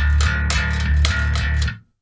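Electric bass guitar playing a low D, struck about eight times in quick succession, some four to five strokes a second, and stopping abruptly near the end. Each attack has a bit of clank on top over a heavy thump of low fundamental.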